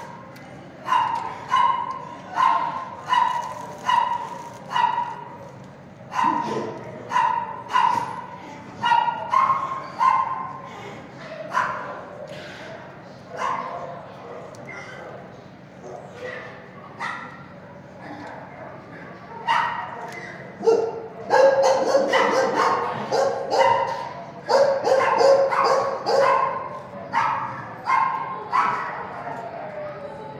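Dogs barking in a shelter kennel: a dog barks repeatedly at about two barks a second, then the barking thins out before several barks and yips overlap in a louder, denser stretch about two-thirds of the way through.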